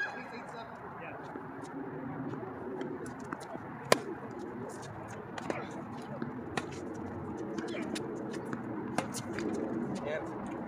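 Tennis balls struck by rackets in a doubles rally: sharp pops a second or more apart, the loudest about four seconds in, over a murmur of voices.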